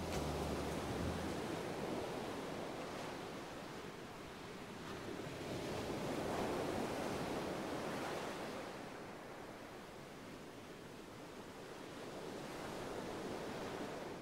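Sea waves washing over rocks on a rocky shore, swelling and ebbing in slow surges, loudest about halfway through and rising again near the end.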